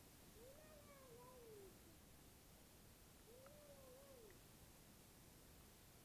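Two faint cat meows a couple of seconds apart, each about a second long, rising and then falling in pitch.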